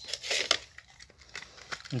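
Brief rustling handling noise with a sharp click about half a second in, then a few faint ticks: a pocket tape measure being picked up and its blade drawn out.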